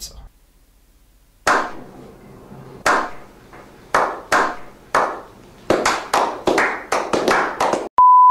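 A slow clap: hand claps, one about every second at first, then quickening and overlapping as more hands join in.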